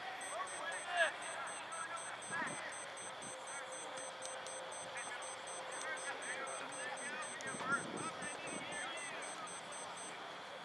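Scattered shouts and calls from voices across a soccer field during play, distant and not forming clear words. A faint high-pitched pulsing sound runs underneath almost throughout.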